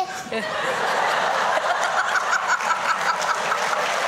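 A studio audience laughing together, with one person's rhythmic laugh, about five pulses a second, standing out over it in the second half.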